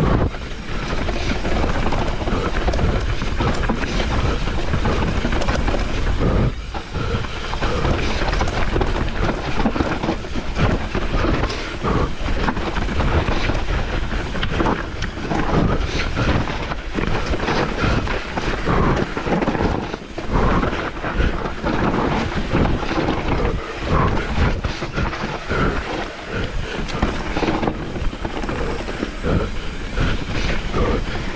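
Mountain bike descending a dirt singletrack at speed: tyres rolling over dirt and roots, with a continuous dense rattle and clatter from the bike's chain and frame over the bumps, and a low rush of wind on the microphone.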